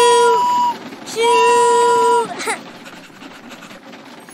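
Toy steam train whistle blown twice: two long, steady toots of about a second each, each dropping slightly in pitch as it ends.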